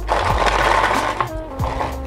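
Small balls of aluminium foil rattling inside an empty plastic bottle as it is shaken, for just over a second, with background music underneath.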